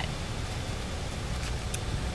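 Steady low rumble and hiss of outdoor background noise, with a faint tick near the end.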